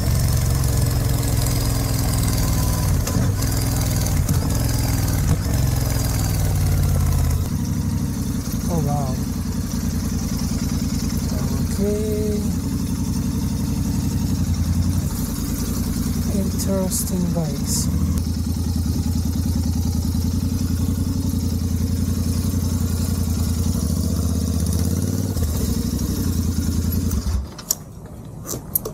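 Royal Enfield Continental GT 650's parallel-twin engine running at low speed, recorded from on the bike. The engine note stops shortly before the end as the engine is switched off.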